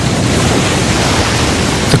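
Steady rushing noise of wind and sea water on an open deck, with wind on the microphone.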